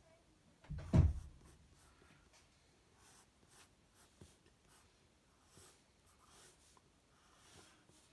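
Faint pencil strokes scratching on drawing paper in short bursts, with one low thump about a second in.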